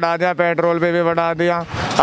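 Speech in Hindi, a man talking, over a steady low hum.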